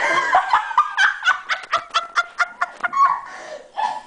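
A person laughing hard: a quick run of short, high-pitched laughs, several a second, trailing off near the end.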